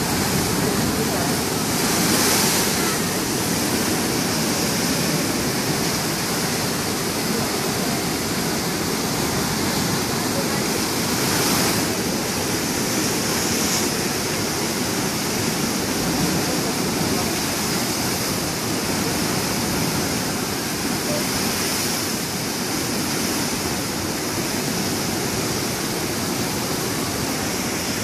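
Heavy storm surf breaking against rocky cliffs, with seawater pouring back off the rock ledges in cascades: a steady rushing roar. It swells briefly about two seconds in and again about eleven seconds in.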